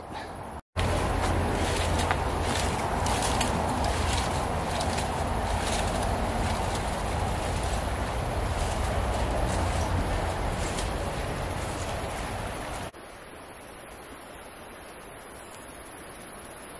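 Steady rushing of a shallow, stony mountain river flowing over rocks, heard from the riverbank beside a swing bridge. About 13 seconds in it cuts off suddenly to a much quieter, steady outdoor hush.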